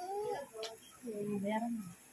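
People talking in drawn-out, sing-song tones, with a short click about half a second in.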